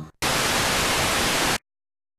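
A loud, even burst of static hiss, about a second and a half long, that cuts off abruptly into dead silence as the recording ends.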